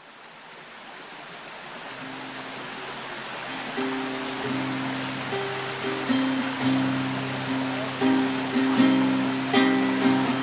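A stream's steady rush fades in, and about two seconds in a nylon-string classical guitar begins playing plucked notes and chords, with sharper, louder string attacks from about six seconds on.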